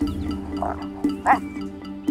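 Hyenas calling in a dominance squabble, twice, the second call louder, over a steady background music bed. The calls come from the dominant female putting another clan member in its place.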